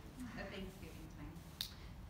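Faint, indistinct voices talking quietly in a room, with one sharp click about one and a half seconds in.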